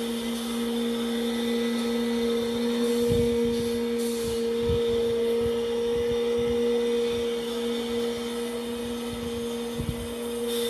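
A machine running with a steady, even hum, joined by a few low knocks from about three seconds in.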